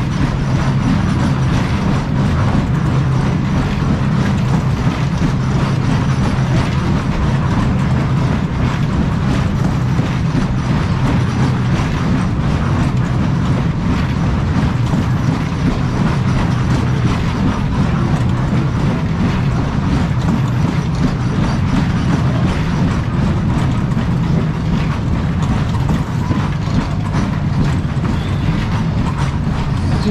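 Heyn Berg- und Talbahn ride running at full speed, its cars rumbling and rattling steadily over the undulating circular track, heard from on board.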